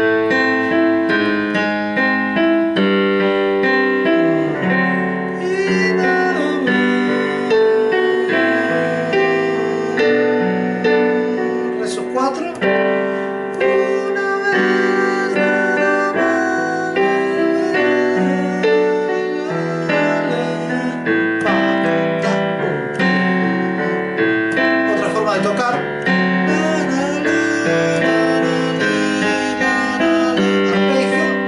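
Yamaha digital piano played continuously in a slow bolero, the left hand sounding bass notes and the right hand filling in the rest of each chord.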